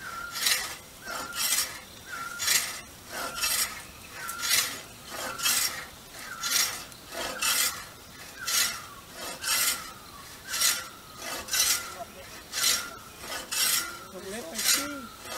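Large hand frame saw ripping a log into planks, in steady back-and-forth strokes about twice a second. Each stroke is a rasping cut with a faint ringing note from the blade.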